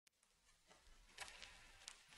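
Near silence, with a couple of faint, brief noises about a second in and again near the end.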